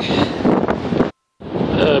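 Wind buffeting the microphone, a steady rushing noise, broken about a second in by a brief dead silence where the recording is cut.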